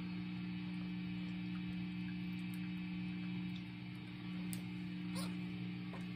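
Steady low electrical hum from an idling electric-guitar amplifier, with a few faint clicks.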